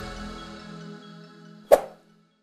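Closing music fading out, with one sharp pop near the end.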